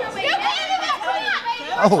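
Fans shouting back at close range, several high-pitched voices overlapping, with a man's brief "Oh" at the end.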